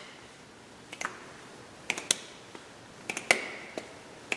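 Several light, sharp clicks and taps, coming in small clusters about a second apart.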